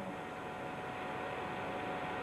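Steady background hiss and hum with a thin steady high tone running through it, and no distinct events.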